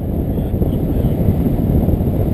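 Wind rushing over the microphone of a camera carried by a paraglider in flight: a loud, steady low rumble of airflow buffeting.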